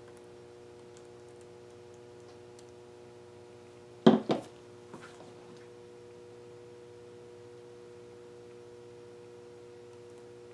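A stretched canvas knocking twice against the tabletop as it is tilted and regripped, then a lighter tap, over a steady low hum.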